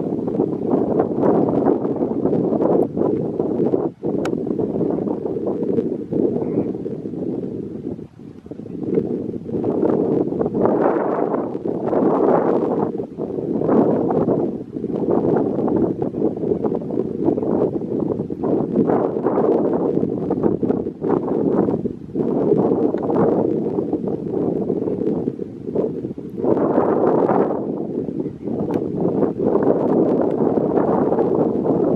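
A flock of greater flamingos calling all together: a continuous low chatter that swells and dips, with two brief lulls.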